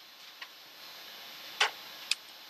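Two computer keyboard keystrokes over a steady hiss: a faint click and then a sharper, louder one.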